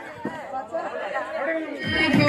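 Several people chatting and calling out at once in a break in the game music; the music comes back in loudly with a heavy beat just before the end.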